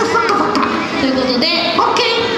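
A young woman's high-pitched voice through a handheld microphone and PA, talking in short, lively phrases.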